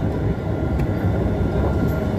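Kalayang Skytrain people-mover car running along its elevated guideway, heard from inside the cab: a steady low rumble with a couple of faint clicks.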